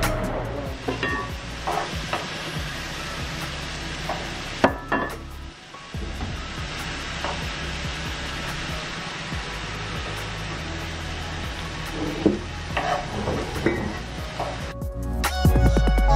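Shrimp and vegetables sizzling in a nonstick frying pan as they are stirred, with a utensil knocking and scraping against the pan now and then.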